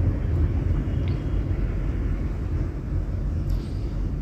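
A steady low background rumble, with two faint taps of a knife on a wooden cutting board as red chillies are sliced, about a second in and near the end.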